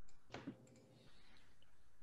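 A single sharp click about a third of a second in, then faint room noise over a video-call line.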